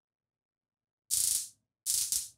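Handheld stun gun firing in two short electric crackling bursts, each about half a second long: the first about a second in, the second near the end. It is a low-voltage unit whose crackle is loud for its sting.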